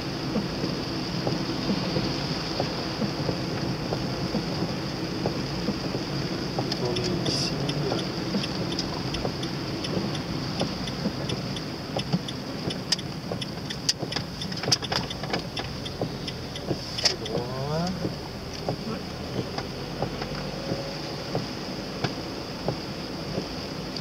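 Steady car-cabin noise from a car driving on rain-soaked roads, with scattered sharp ticks through the middle stretch and a brief rising whine near the end.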